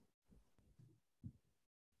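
Near silence, with three faint, brief low thumps.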